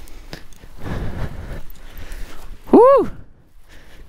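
A short vocal exclamation about three seconds in, its pitch rising and then falling, over a softer rustle of wind and footsteps on dry ground.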